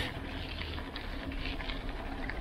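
Steady wind and road noise from riding a bicycle along a paved lane, with a low rumble on the microphone and a few faint ticks.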